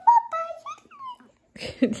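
Domestic cat meowing, a few short thin cries that rise and fall in pitch, which the owner takes for the cat wanting to be let outside.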